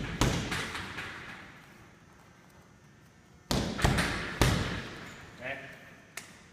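Punches landing on a hanging heavy bag: one blow just after the start, then about three and a half seconds in a quick run of three blows, the jab, hard right hook to the body and chopping left hook of the combination. Each blow leaves a short ringing tail in the big gym.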